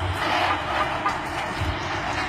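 Steady road traffic noise: a continuous hiss with a low rumble underneath.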